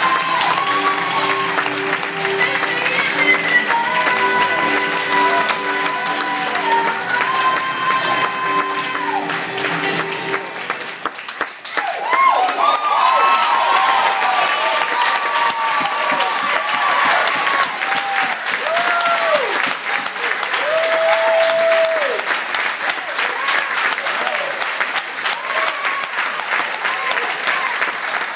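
Music with long held notes plays for about the first eleven seconds and then stops. Afterwards a congregation applauds, with many voices calling out.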